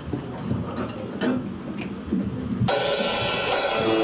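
A live rock band kicks in about two and a half seconds in with a crash of cymbals and drums over guitars, opening a song and holding loud from there. Before it, quieter mixed sounds come from the stage.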